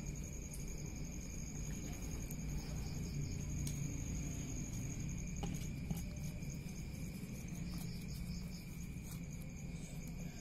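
Insects, crickets, trilling steadily in two high continuous tones with a faint pulsing chirp above them, over a low background rumble and a few faint handling clicks.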